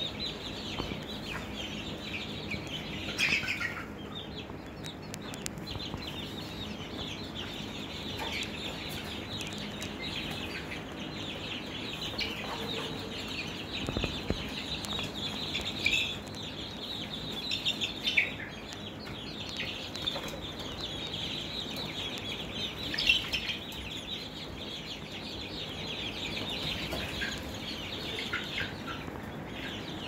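A brooder full of five-week-old chicks, Barred Plymouth Rocks, Golden Buffs and Easter Eggers, peeping and chirping continuously. A few louder single calls stand out now and then.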